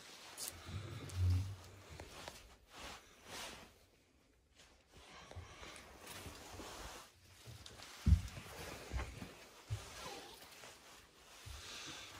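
Footsteps of people walking over a rug and a debris-strewn floor, with clothing rustling and scuffs of litter underfoot; a heavier thud about eight seconds in is the loudest sound.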